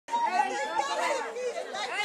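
Several people talking at once in a crowd, a steady murmur of overlapping voices with no single speaker standing out.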